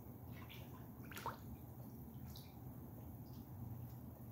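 Faint water sounds in a small lined duck pond: an aerator bubbling up through the water over a steady low hum, with small splashes and drips from diving hooded mergansers, the sharpest about a second in.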